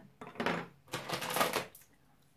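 Plastic bead necklace rattling as it is picked up and handled, the beads clacking together in two short bouts.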